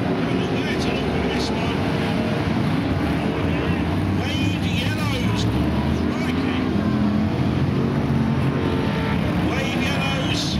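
BriSCA F1 stock cars' V8 engines running hard on the track, a dense, steady, loud engine noise with no pauses as several cars pass close by.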